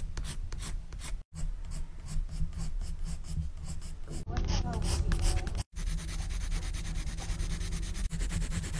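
Coloured pencil scratching on sketchbook paper in quick, repeated short strokes as hair is shaded in, with two brief silent breaks.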